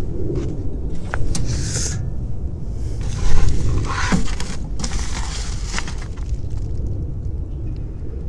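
Low wind rumble on a phone microphone with footsteps, then a loud clatter about three seconds in as the mailbox door is opened, followed by rustling as a plastic bubble mailer is pulled out.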